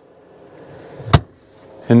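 Lid of a Dometic CFX 75DZ portable fridge-freezer shut with a single sharp thump about a second in, after a faint rustle of handling.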